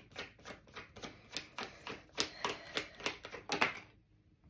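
Tarot cards being shuffled by hand, cards snapping off the deck in a steady run of light clicks about four or five a second.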